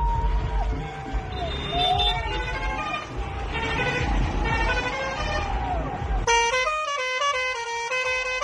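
Tourist bus's engine rumbling while a musical horn plays a tune of rising-and-falling glides. About six seconds in the rumble drops away and music with a stepped melody takes over.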